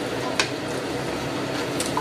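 A wooden spoon stirring chickpeas and chicken pieces through a stew in a stainless steel pot, giving soft wet squishing with a couple of light knocks.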